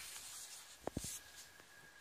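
Sticker-book sheet being handled and turned over: faint paper rustle with two quick light taps about a second in.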